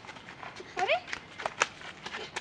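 A man's short cry of "arre" rising sharply in pitch, among several short sharp knocks of fists landing on a man's back.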